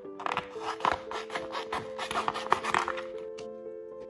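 A sheet of glitter adhesive vinyl rustling as it is handled and flexed, for about three seconds, over background music.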